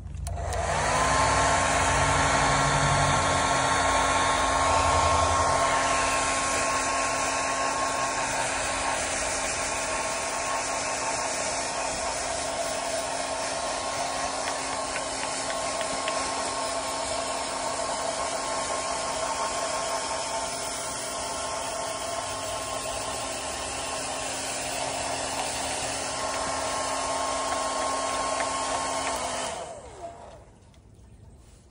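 Handheld electric blower running steadily and blowing air over a cockatoo's feathers, with a steady whine over a rush of air. Its motor spins up with a rising whine about a second in, and it switches off just before the end.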